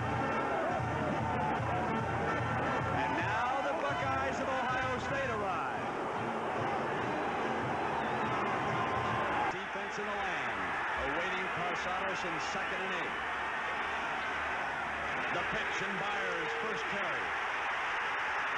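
Music for the first half, with steady held tones over an even low pulse. About halfway through it cuts off suddenly to a large stadium crowd cheering and shouting.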